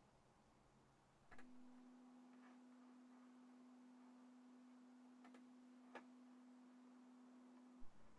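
Near silence, with a faint steady pure tone that starts about a second and a half in and cuts off just before the end, and a few faint clicks.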